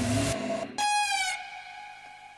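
Big room house track ending: the full beat cuts off about a third of a second in, then a single sustained note sounds, dips slightly in pitch and rings out, fading away.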